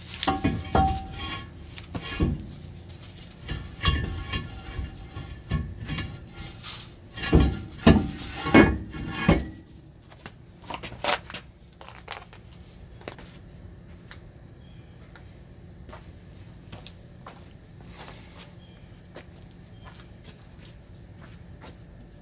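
Heavy brake drum clanking and scraping against the brake shoes and hub as it is worked onto a truck's rear axle hub: a run of metal knocks with brief ringing for about the first ten seconds, then only faint scattered ticks.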